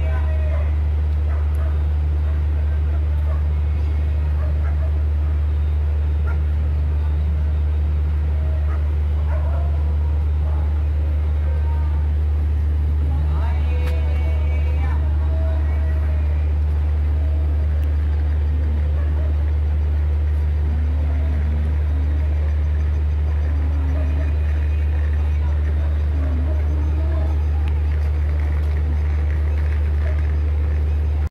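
Steady low drone of a train standing at the platform, its engine running without let-up, with scattered faint voices over it and a short sharp call about fourteen seconds in.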